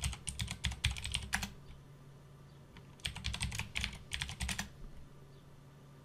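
Typing on a computer keyboard: two quick runs of keystrokes, each about a second and a half long, with a pause of about a second and a half between them.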